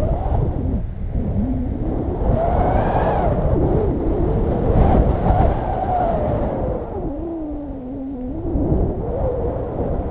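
Wind rushing over the microphone during a paraglider flight, a steady low rumble with a wavering tone that slowly rises and falls in pitch, highest about three and five seconds in and dipping lowest near eight seconds.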